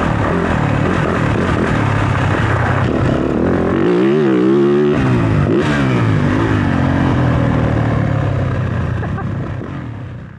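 Dirt bike engine revving on and off the throttle while riding a motocross track, its pitch rising and falling quickly about four seconds in. The sound fades out near the end.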